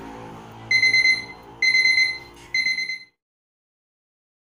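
Alarm clock beeping: three high-pitched electronic beeps, each about half a second long, sounding an alarm to wake someone.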